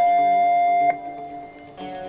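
Electric motorcycle's horn sounding one steady, sharply cut note for about a second. Quiet background music with guitar follows.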